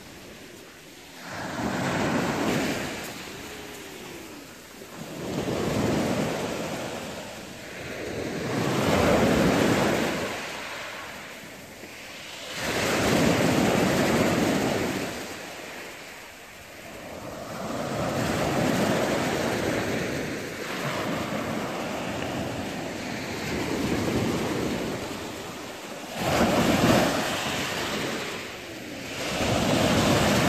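Small sea waves breaking and washing up a fine pebble beach, a loud surge of surf every three to four seconds, with quieter gaps between.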